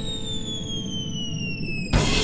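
Cartoon falling-whistle sound effect: a long, steady downward glide in pitch over a low rumble, ending in a sudden thump near the end, as of a small treasure chest dropping onto the sand.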